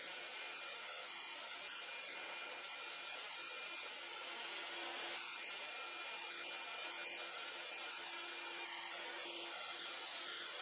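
BaByliss Big Hair rotating hot air brush running, blowing a steady hiss of hot air as it dries a section of hair.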